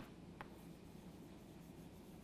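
Faint chalk writing on a chalkboard, with a sharp tap right at the start and a lighter tick about half a second in.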